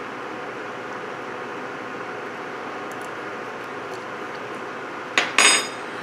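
Steady hum and hiss of an induction burner running under a simmering pot of chili, with a short, sharp noise about five seconds in as a spoon is taken to taste it.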